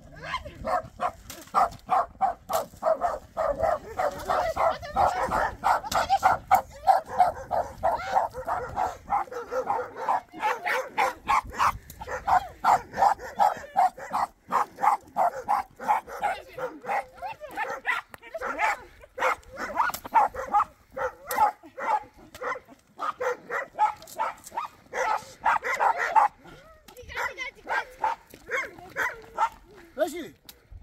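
A dog barking rapidly, over and over without a pause, with people shouting over it.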